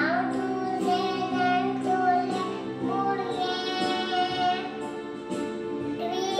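A young girl singing a slow melody into a microphone, holding long notes that glide between pitches, over a steady instrumental backing.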